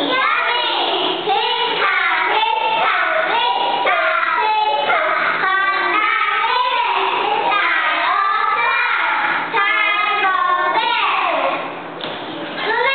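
Young children singing a chant together, the song ending shortly before the end.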